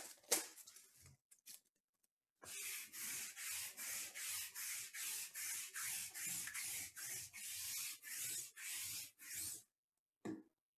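Lint roller rolled back and forth over a fabric mat in quick, even rubbing strokes, about two a second. It starts a couple of seconds in and stops just before the end.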